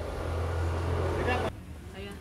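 Street background noise: a steady low rumble with faint voices in the distance. It cuts off abruptly about one and a half seconds in.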